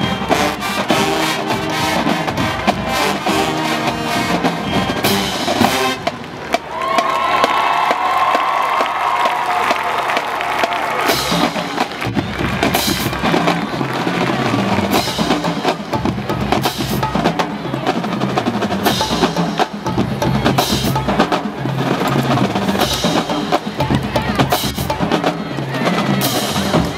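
Marching band drumline of snare drums, tenor drums, bass drums and cymbals playing. About six seconds in the playing breaks off briefly, a held note follows for a few seconds, and from about eleven seconds on the drums play a steady marching cadence.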